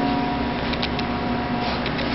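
Steady background machine hum, with a few faint clicks near the middle.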